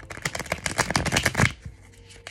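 A deck of tarot cards being shuffled by hand: a fast run of crisp card clicks for about a second and a half, then stopping.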